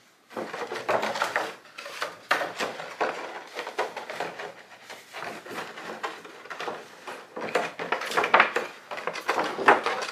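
Christmas ball ornament and its cap being handled: a string of light clinks, clicks and scrapes as someone tries to fit the top back on.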